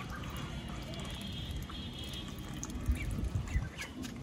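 Young ducks dabbling in a shallow plastic basin of water and feed, making soft wet splashing and sifting sounds, with a few sharper clicks near the end.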